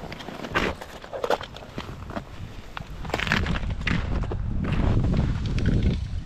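Boots crunching across snow on lake ice in irregular steps, with jacket fabric rubbing against the body-worn microphone. A low rumble builds over the second half.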